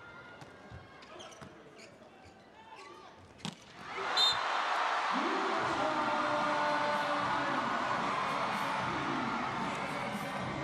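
A volleyball is struck hard once in a back-row spike about three and a half seconds in. An arena crowd then breaks into loud cheering, with shouting voices, which lasts to the end.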